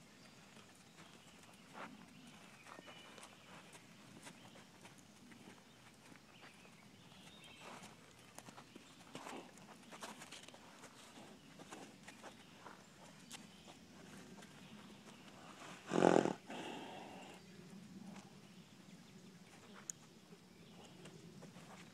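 Two-month-old colt's hooves and the handler's boots walking on soft arena dirt, faint scattered steps. A short loud burst of noise stands out about four seconds before the end.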